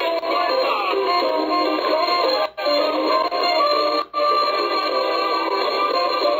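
Live smooth-jazz band music with a saxophone lead line over guitar, heard through small computer speakers, so it sounds thin and tinny with no bass or treble. The sound cuts out briefly twice, about two and a half and four seconds in.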